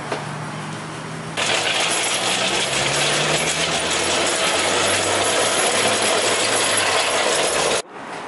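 Engine hoist with a Nissan VQ V6 hanging from its chain, rolled over pavement: a steady, gritty metallic rattle from the casters and chain. It starts suddenly about a second and a half in and cuts off sharply just before the end, over a low steady hum.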